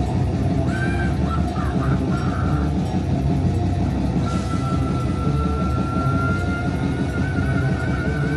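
Live heavy rock band playing loud: electric guitar and drums with a singer's voice over them. From about four seconds in a single high note is held, wavering near the end.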